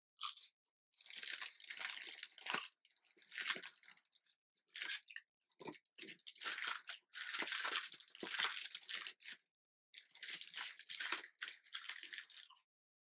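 A person chewing crunchy fried food, fries and fried chicken, close to the microphone: irregular runs of crunching with short pauses between mouthfuls.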